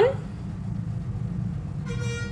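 Low background music bed, mostly deep notes, with a short horn-like tone that starts near the end.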